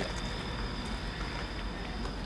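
Outdoor night ambience: a steady low rumble of distant traffic, with a thin, steady high-pitched tone over it.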